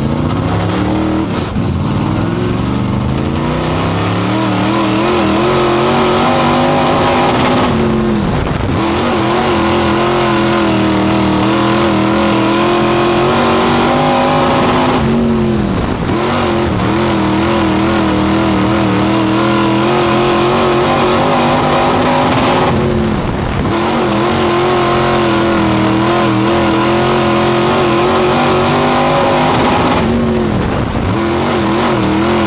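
Dirt late model race car's V8 engine at full throttle, heard from inside the cockpit: it climbs in pitch at the start, holds high down each straight, and drops briefly each time the driver lifts for a turn, three times, about every seven to eight seconds, as the car laps the small dirt oval.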